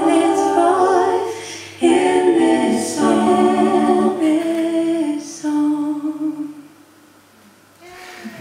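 A woman singing unaccompanied, holding long notes through the closing phrases of a song; the last note fades out about seven seconds in.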